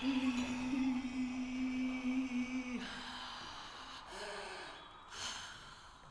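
A quiet low note held steady for nearly three seconds, then fading, followed about five seconds in by a short, breathy gasp from the singer on stage.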